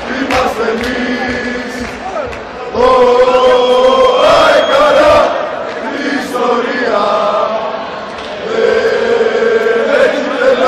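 Football supporters' chant: a group of male voices singing a club chant in unison in long held phrases, loudest about three to five seconds in and again near the end.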